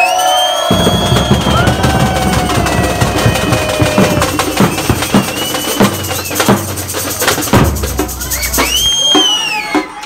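Street samba percussion: surdo bass drums and snare drums kick in about a second in and play a dense samba beat, with voices and long high-pitched calls over it; the bass drums drop out near the end.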